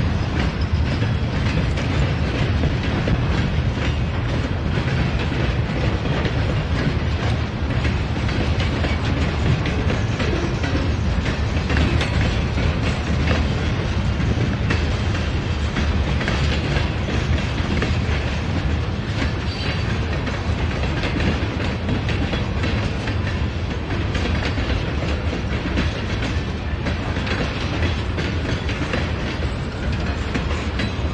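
Freight train of covered hopper cars rolling steadily past, with a continuous rumble and light clicking of the wheels on the rails.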